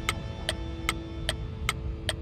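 Ticking sound effect: evenly spaced sharp ticks, about two and a half a second, timed with a waiting caption of dots. A low steady rumble sits underneath.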